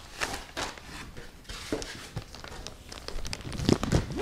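Packaging rustling and crinkling as a laptop is lifted out of its cardboard shipping box and packing insert, a string of small irregular crackles with a louder cluster near the end.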